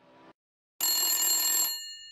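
A telephone bell ringing once, for about a second, its tones fading out afterwards.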